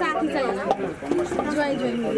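Speech only: several people talking at once in indistinct chatter.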